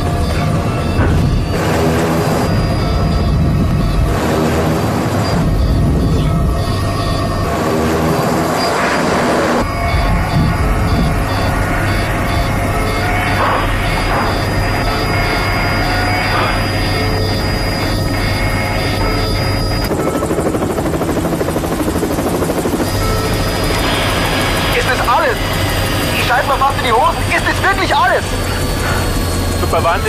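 Film soundtrack: dramatic music over the steady engine and rotor noise of a helicopter, with three heavy bursts of sound in the first ten seconds. A fast, high-pitched warning beep repeats for about ten seconds in the middle.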